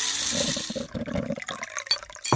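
Sound effect of liquid being poured, a splashing, filling rush that is strongest in the first second and fades away toward the end.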